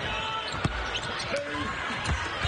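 A basketball being dribbled on a hardwood court, the sharpest bounce about two-thirds of a second in, over steady arena crowd noise.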